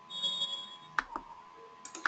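Two pairs of sharp clicks, about a second apart, over a steady faint high hum, with a brief high ringing tone near the start.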